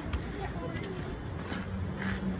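Faint, indistinct children's voices, with a short click right at the start.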